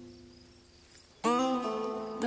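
Background score music: plucked string notes fade away, then a new loud held note starts suddenly a little past the middle.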